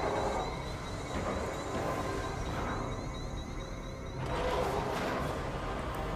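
A film soundtrack heard through playback speakers: dramatic music mixed with rumbling sound effects, its texture changing about four seconds in.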